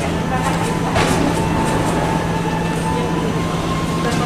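Airport terminal hall ambience: a steady low mechanical hum with faint background voices, and a brief clatter about a second in.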